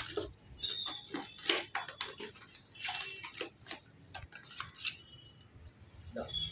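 Plastic packets of powdered fishing bait and a cardboard box being handled, giving irregular rustles and light knocks.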